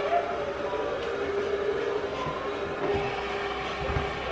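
A steady machine hum with one constant tone over a faint even noise, with no break through the whole stretch.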